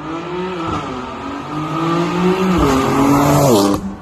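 BMW M4's twin-turbo straight-six, with a catless downpipe, accelerating hard past on a flyby. The engine note climbs, drops suddenly about two and a half seconds in as it shifts up, then climbs again. It is loudest near the end, falls in pitch as the car goes by, and cuts off suddenly.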